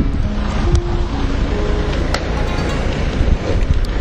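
Heavy wind rumble on the microphone, with a faint tune of short held notes stepping between pitches playing over it.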